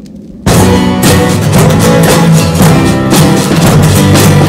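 Rock music on acoustic guitars and a drum kit, bursting in loudly about half a second in after a brief drop-out.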